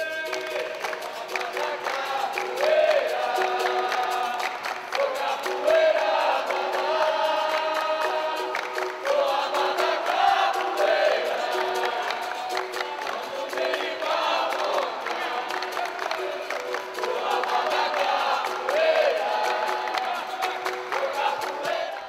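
Capoeira roda music: a group singing to berimbau and atabaque, with a steady run of percussive strokes under the singing.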